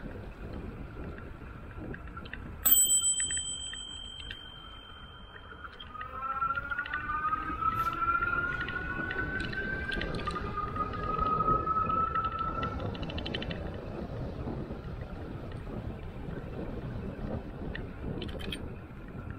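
A bicycle bell struck once about three seconds in, ringing out over a couple of seconds. Then the Aventon Level e-bike's rear hub motor whines, its pitch rising slowly for several seconds as the bike gathers speed, over steady wind and tyre noise.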